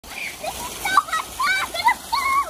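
Fountain water jets splashing steadily into a basin, with a young child's high-pitched voice over it.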